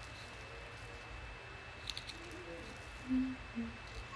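A few light clicks of a beaded chain necklace being handled, over a steady background hiss, with a short low hum a little after three seconds in.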